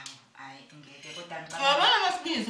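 A woman talking, with a spoon or fork clicking against a plate of food. The speech is loudest near the end.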